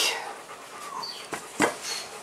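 A metal ladle in a stainless steel mixing bowl, knocking twice in quick succession about a second and a half in.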